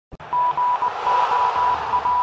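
Logo-intro sound effect: a hiss of static with a steady high beep that keeps cutting in and out in short broken dashes, starting just after a click.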